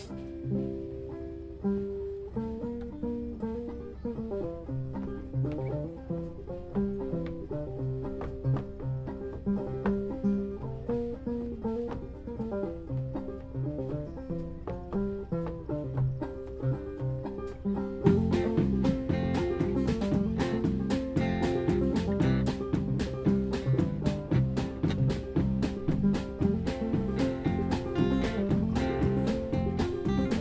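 Live band playing a country/bluegrass-style tune on acoustic guitars, electric bass and drum kit. Picked guitar and bass carry the first part, then the full band with drums and cymbals comes in louder a little past the halfway point.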